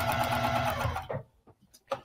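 Juki sewing machine stitching a straight quilting line through soft vinyl and foam interfacing, running fast and steadily, then stopping about a second in. A couple of faint clicks follow.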